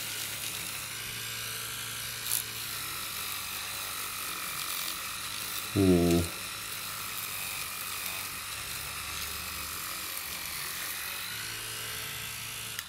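Electric toothbrush running steadily, its spinning head scrubbing the corroded battery terminal area of a minidisc player. A brief low hum-like sound comes about six seconds in.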